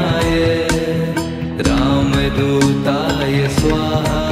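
Hindu devotional bhajan music to Hanuman: held melodic notes over a steady percussion beat.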